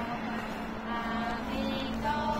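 Street traffic noise with a steady low hum, and a person's voice heard briefly about a second in and again near the end.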